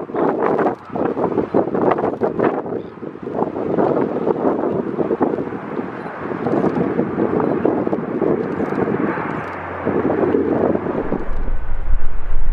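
Twin CFM56 jet engines of a Boeing 737-700 BBJ running at high power as it rolls down the runway: a loud, steady rush of jet noise. Wind buffets the microphone in the first few seconds.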